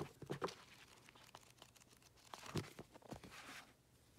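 Paperback books being handled: soft rustling and light taps of covers and pages as one book is set down and the next picked up, in a burst right at the start and again past the halfway point.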